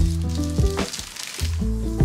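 Background music with a steady bass line, over the crackle of thin plastic shrink-wrap being peeled off a laptop box, most noticeable in the first second.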